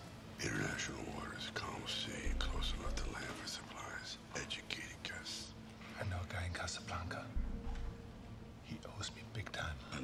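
Two men talking in hushed, whispered voices over a faint steady hum, with two short low rumbles underneath.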